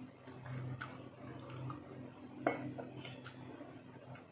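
Quiet sounds of eating at a table: light clicks and one sharper clink against a stainless-steel plate about two and a half seconds in, over a faint steady low hum.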